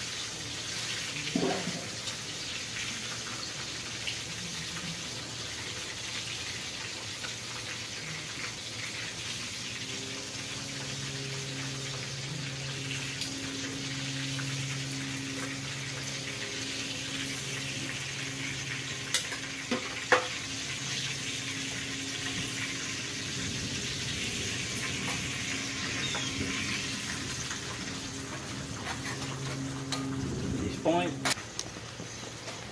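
Steady rain mixed with food sizzling in a frying pan on a Firebox camp stove, a continuous even hiss. A low steady hum comes in about ten seconds in, and two sharp metallic clicks, tongs against the pan, come a little before the twenty-second mark.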